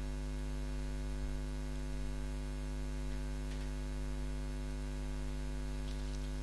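Steady electrical mains hum in the recording, a constant low buzz with many evenly spaced overtones.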